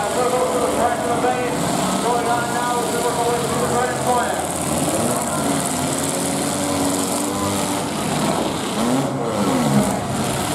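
Demolition derby cars' engines running and revving up and down as the cars push against each other, with a voice over them.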